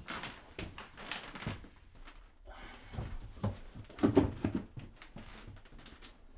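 Soft knocks and rustling from someone handling things in a small room, loudest about four seconds in.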